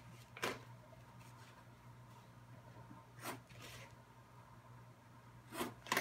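A few soft taps and faint rubbing as a pencil and plastic ruler are worked on cereal-box cardboard, over a quiet room with a low steady hum.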